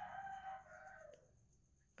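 A rooster crowing faintly in the distance: one long call that drops in pitch and fades a little over a second in.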